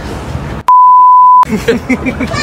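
A loud, steady, single-pitch censor bleep, a little under a second long, starting about two thirds of a second in; all other sound drops out beneath it, as an edit dubbed over the audio.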